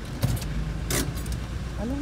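Low, steady rumble of a car heard from inside its cabin, broken by two brief sharp rustling clicks, about a quarter second and a second in.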